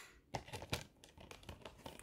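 Faint, irregular clicks and taps of a plastic Blu-ray case being handled as its hinged inner disc tray is turned over.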